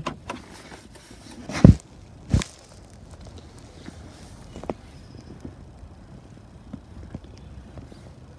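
Two loud, sharp thumps less than a second apart, then soft, scattered footsteps on tarmac.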